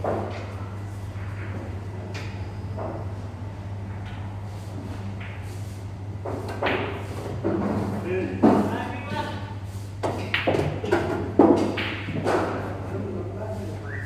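Pool balls clacking sharply a few times, the loudest strike about eight and a half seconds in, over indistinct talk and a steady low hum.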